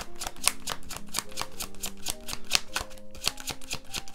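Tarot cards being shuffled by hand, a quick run of crisp card clicks, over soft background music with held notes.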